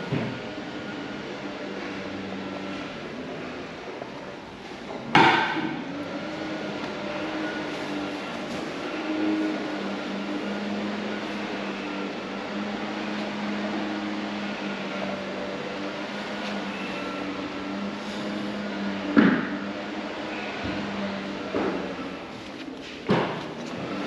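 A steady low hum runs throughout, broken by two sharp knocks, one about five seconds in and one near the end.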